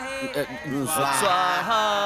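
Male voices chanting a Sanskrit mantra.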